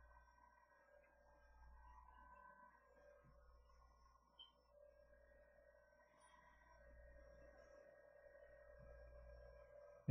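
Near silence: room tone with a faint steady low hum and a few faint steady tones.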